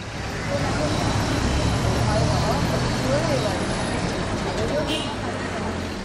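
Busy street ambience: a steady wash of road traffic with the voices of people nearby, and a laugh partway through.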